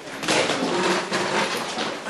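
Classroom bustle: students settling at their desks, with shuffling, scraping and a few knocks of chairs and desks.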